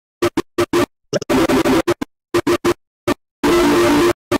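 Rapid stutter-edited audio: short snippets of a cartoon soundtrack chopped and repeated several times a second, each cut off sharply against silence. Near the end comes a longer noisy, harsh burst.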